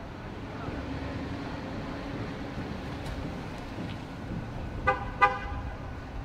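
Steady street traffic rumble, then two short car-horn toots in quick succession near the end.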